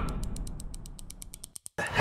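Sound effect of a steel vault-door lock mechanism turning: a rapid, even run of ratcheting clicks, about ten a second, over a fading low rumble. It cuts off abruptly near the end.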